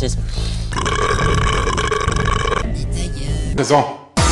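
A long, steady, droning vocal sound, like a burp stretched out by editing, held for about two seconds. It is cut off by short spoken phrases near the start and near the end, over music with a steady bass line.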